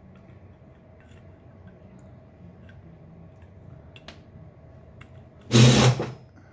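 Faint small ticks and creaks of a screw being turned by hand into the plastic base of a double-walled tumbler. Near the end, a short loud breathy laugh.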